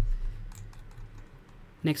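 Faint computer keyboard and mouse clicks over a low steady hum, after a low thump at the start.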